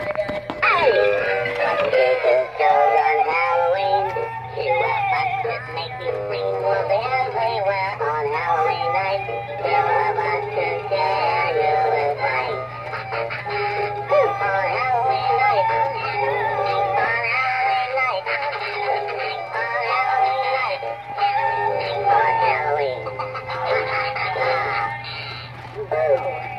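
Two animated Halloween props, a two-headed reaper and a skeleton bride and groom, playing their recorded songs together: synthetic-sounding singing over music, with a steady low hum underneath.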